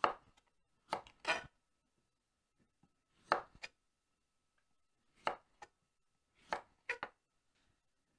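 A kitchen knife cutting the waxed skin off a rutabaga and striking a wooden cutting board: about nine sharp chops, mostly in loose pairs, with short silent pauses between.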